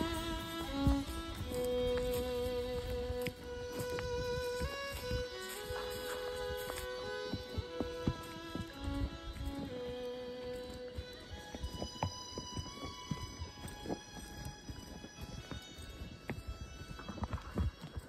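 A fiddle plays the closing melody of a country song, its held notes falling away about eleven seconds in. Under it a horse's hooves clip-clop on a dirt trail, the knocks coming thicker and plainer near the end.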